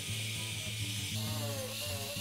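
Benchtop drill press running steadily as it bores holes through plywood, with background music underneath.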